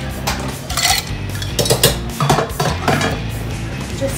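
Ice cubes dropped into a pint glass, clattering and clinking in a series of rattles.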